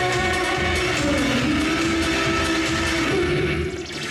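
Live pop song from a stage performance: a women's vocal trio singing over band backing, with one long held note through the middle. The sound dips briefly near the end.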